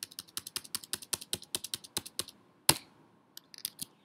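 Computer keyboard typing: a quick run of keystrokes, about ten clicks a second, then one louder key press and a few scattered keystrokes near the end.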